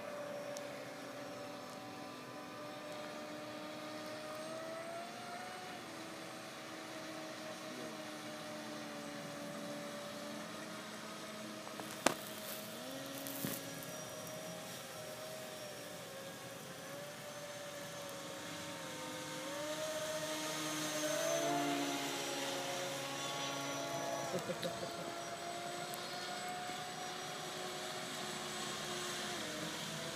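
Whine of small electric RC motors, an RC seaplane and a Revolt 30 RC speedboat, several pitched tones drifting up and down as the craft move around the lake, growing louder about two-thirds of the way through. A sharp click about twelve seconds in.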